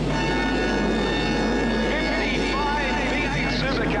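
A grid full of V8 Supercars, 5.0-litre Holden Commodore and Ford Falcon V8s, held at high, steady revs together while waiting for the start. It is a dense, steady high-pitched drone over a low rumble.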